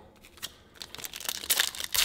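Foil wrapper of an O-Pee-Chee Platinum hockey card pack crinkling as it is handled and torn open, starting about half a second in and getting louder toward the end.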